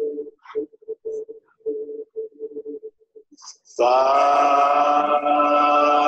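Sustained pitched tones: steady notes breaking up and cutting in and out for the first three seconds, then a loud, steady held tone rich in overtones from about four seconds in.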